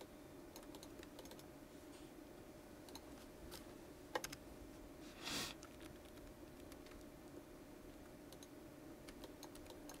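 Faint clicks of a computer keyboard and mouse over a low, steady hum. A small cluster of clicks comes about four seconds in, and a short hiss follows about a second later.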